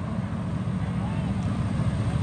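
Two drag cars' engines running with a steady low rumble as the cars slow down the shutdown area with their parachutes out after the finish line.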